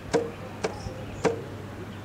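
Three sharp knocks, about half a second apart, each with a short ring, over a steady low outdoor background.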